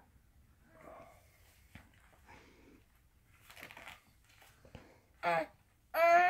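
Faint, breathy mouth noises and small vocal sounds from a baby being spoon-fed puréed peas, coming in a few soft spurts. A man says a short 'uh' near the end.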